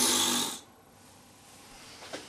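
A man's short, forceful breathy exhale, about half a second long, followed by faint room tone.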